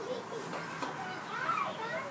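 Faint background voices with low room noise; no music is playing yet.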